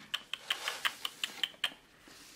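Hands on paper planner pages make about nine light taps, roughly five a second, which stop shortly before the end.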